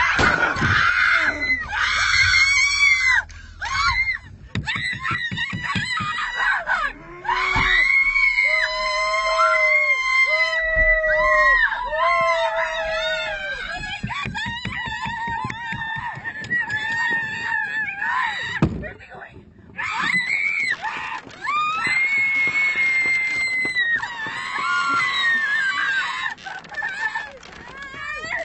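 People screaming in fright inside a car: long, high-pitched screams, with a few lower wavering wails partway through and a brief pause about two-thirds of the way in.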